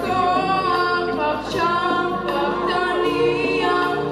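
A boy singing a Hebrew pop song through a microphone and PA, with instrumental accompaniment underneath.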